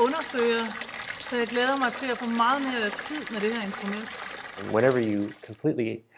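Steady splashing and pouring of hydraulophone water jets under a woman's speech, cutting off near the end, where a man's voice begins.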